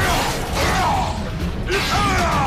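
Dramatic background music over battle sound effects, with falling pitched glides and a sudden burst of noise near the end.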